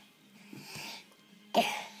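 Baby sneezing once, a sudden sharp burst about one and a half seconds in, after a faint breath in.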